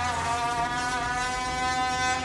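A steady droning tone with many overtones, settling after a slight dip in pitch and holding level.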